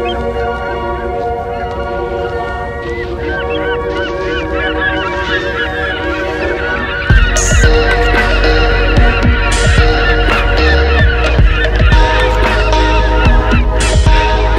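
A flock of birds calling, with many short calls overlapping, over background music. A heavy beat comes into the music about seven seconds in.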